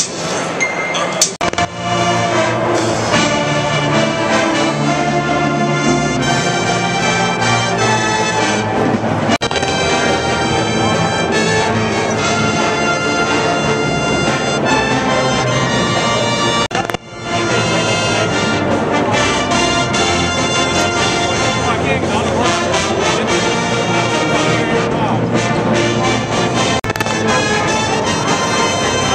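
A pep band's brass section playing a tune, with sousaphones in the band, pausing briefly about two-thirds of the way through before playing on.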